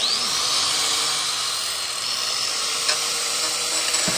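Electric angle grinder switched on: it spins up with a rising whine, then runs at full speed with a steady high whine and hiss.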